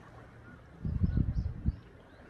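Wind buffeting a smartphone microphone: a low rumbling gust that swells just under a second in and dies away before the end, with a few faint high chirps above it.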